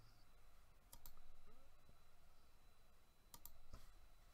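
Near silence, broken by a few computer mouse clicks: one about a second in and two close together near the end.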